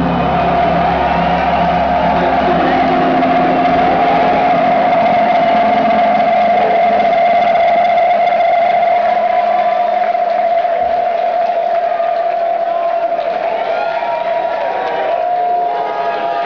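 Loud live rock band ending a song: the bass drops out about three seconds in, leaving one steady held tone ringing over crowd noise.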